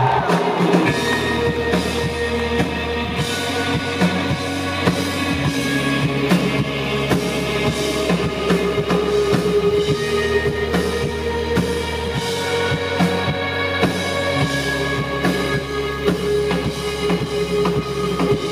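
A live band playing a song, the drum kit keeping a steady beat over bass and sustained instrument notes.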